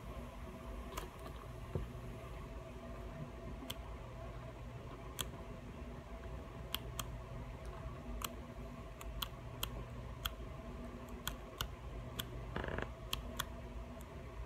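Faint handling of a paper pad: scattered sharp ticks and clicks as the sheets are held and leafed through, with a brief rustle of a page near the end, over a steady low room hum.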